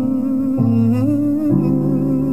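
Music: a man's wordless hummed melody with a slight waver, moving to a new note about half a second in and again near the middle, over sustained low notes.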